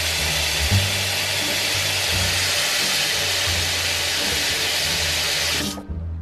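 EcoBidet handheld bidet sprayer shooting a steady jet of water into a bathroom sink: a loud, even hiss that cuts off suddenly near the end.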